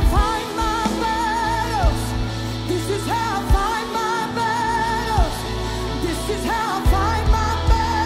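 Live worship band playing: a woman sings three long held phrases with vibrato, each ending on a falling note, over electric guitar, bass and drums.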